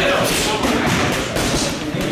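Gloved punches landing on a heavy punching bag: a run of thuds, with voices talking under them.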